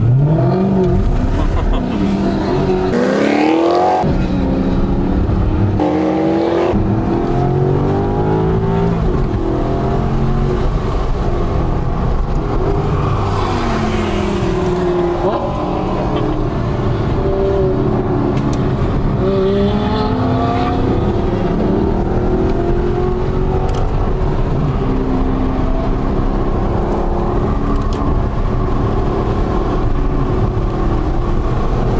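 Maserati GranTurismo's 4.3-litre V8 heard from inside the cabin, driven hard on track: the engine revs up through the gears, its pitch rising and dropping several times with gear changes and lifts off the throttle.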